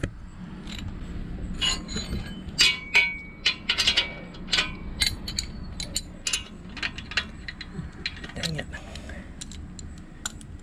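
Steel bolts, nuts and frame pieces of a Haul-Master trailer dolly being handled and unbolted by hand: a string of irregular metal clinks, taps and rattles, some ringing briefly, busiest in the first half.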